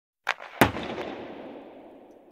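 Intro sound effect: a short sharp click, then a loud impact about half a second in, whose echoing tail slowly dies away.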